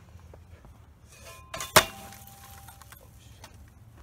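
A stick hits a Hampton Bay Littleton ceiling fan hard a little under two seconds in, after a lighter knock, and the fan's metal housing rings briefly afterward.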